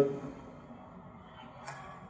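A man's lecture voice trails off at the start, then a pause of quiet room tone with a short faint hiss near the end.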